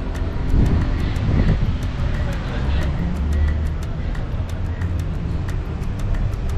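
Low rumble of road traffic, with faint voices in the background.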